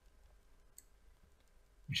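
Quiet room tone with a few faint short clicks, the clearest a little before the middle; a man's voice starts just before the end.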